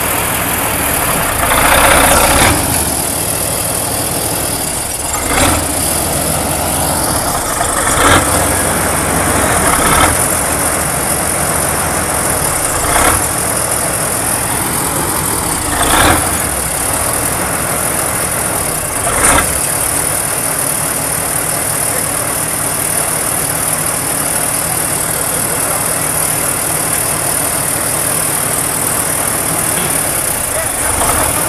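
Kirovets K-700 tractor's diesel engine running steadily at an even speed. Brief sharp noises stand out above it every few seconds, about seven in the first twenty seconds.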